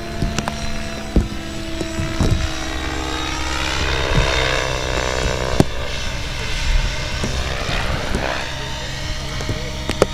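Radio-controlled 3D helicopter in aerobatic flight, its rotor and motor pitch rising and falling as the blades load and unload through a pirouetting manoeuvre. A few sharp clicks sound along the way.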